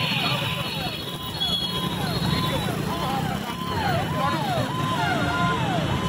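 Street noise of traffic and crowd chatter, with a repeated electronic tone that rises, holds and falls about twice a second.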